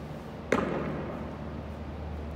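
A thrown tennis ball striking a target on the wall once, a sharp smack about half a second in that echoes briefly around a large indoor hall.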